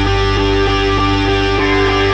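Instrumental rock music: electric guitar chords over a held bass note, with mid-range notes changing in a steady rhythm about three times a second and no vocals.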